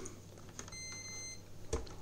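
Hoover DXCC69IB3 washing machine's control panel beeping once, a single high tone of about half a second, as the program selector dial is turned. A short click follows near the end.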